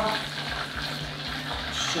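Pierogi deep-frying in hot oil, a steady sizzling hiss.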